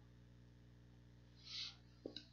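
Near silence: a steady low electrical hum, with one brief soft hiss about one and a half seconds in.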